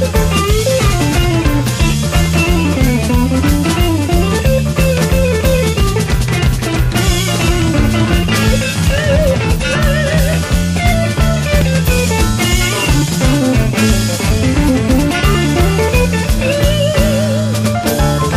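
Blues-rock band in an instrumental break: a lead electric guitar plays a solo of bent notes with vibrato over bass and drum kit.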